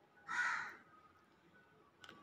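A crow cawing once, a short harsh call.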